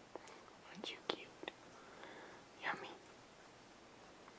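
A cat licking another cat's fur up close while grooming: a few faint wet clicks and short rasps of the tongue, the loudest about a second in and just before three seconds.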